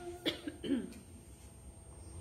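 A woman coughs once into her hand, about a quarter second in, then briefly clears her throat. Quiet follows.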